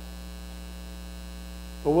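Steady low electrical mains hum in the sound system, with a man's voice starting again near the end.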